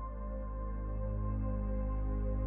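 Calm ambient background music: sustained, slowly swelling tones held over a deep steady drone.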